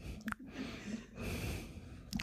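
Faint breathing close to the microphone, with a soft breath a little past the middle.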